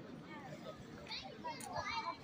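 Background voices of children and adults talking and playing some way off, several overlapping at once, with a few higher-pitched calls about a second in.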